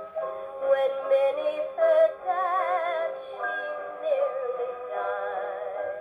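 A 78 rpm dance-band record playing acoustically through the horn of a Kompact Plaza compact portable gramophone: an instrumental passage of the orchestra with held, wavering notes, thin in tone with little bass or treble.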